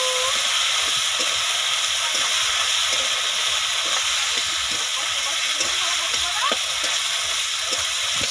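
Diced potatoes and spice pastes sizzling steadily in hot oil in a metal kadai, stirred with a metal spatula that scrapes the pan now and then. This is the masala being fried down with the potatoes until its raw smell is gone.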